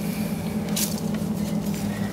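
A steady low hum, with a short scraping sound just under a second in.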